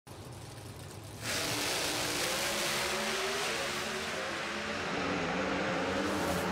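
Pro Stock Chevrolet Camaro's 500-cubic-inch naturally aspirated V8 at full throttle, heard from inside the cockpit: it jumps sharply louder about a second in and its pitch climbs as the car accelerates down the drag strip.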